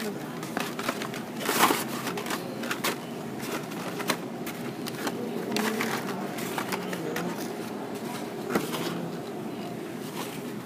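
Hot Wheels die-cast cars in blister-card packs being handled and flipped through on a display rack: irregular clicks, taps and crackles of card and plastic, with a louder crackle about one and a half seconds in.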